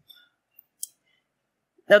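Near silence in a small room, broken by one short, faint click a little under a second in; a voice starts speaking at the very end.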